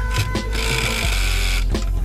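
A song with a steady beat plays throughout. From about half a second in, a pneumatic air ratchet runs for just over a second with a hiss.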